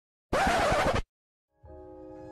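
A short, harsh scratching noise, under a second long, set between two silences. Bowed string music led by a violin comes in near the end.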